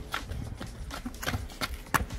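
Quick running footsteps on a paved street, several steps a second, with one louder step near the end.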